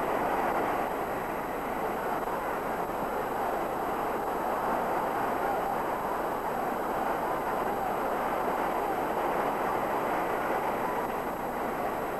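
Steady, even rushing noise with no speech or music in it.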